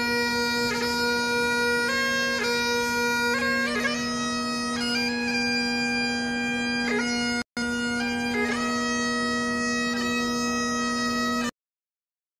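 Solo bagpipes playing a slow tune: held chanter notes stepping up and down over one steady drone. The sound cuts out for a split second about seven and a half seconds in, and again just before the end.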